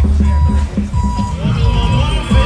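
Marching band drums beat out a steady cadence. Over them, a vehicle's reversing alarm gives three high, even beeps, about one every three-quarters of a second.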